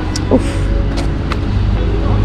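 Maserati sports car's engine idling with a steady low rumble.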